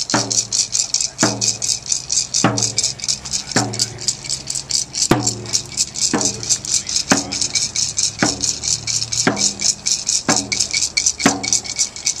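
A drum struck in a steady beat about once a second, each beat ringing briefly, with a rattle shaken rapidly and continuously over it.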